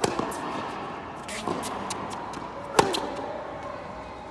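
Tennis rally on a hard court: a sharp racket-on-ball hit right at the start, softer hits and ball bounces about a second and a half in, and the loudest racket strike near three seconds in.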